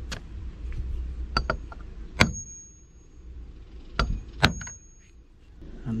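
Hammer striking the top of a hammer crimper to crimp a lug onto a heavy 1/0 battery cable: a run of sharp metallic blows. The two loudest come about two seconds apart, each leaving a brief high ring.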